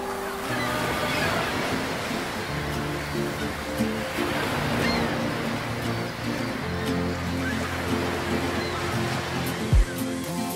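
Ocean surf breaking on a rocky shore, a steady wash of waves, over soft sustained music. A single loud, deep thump comes near the end.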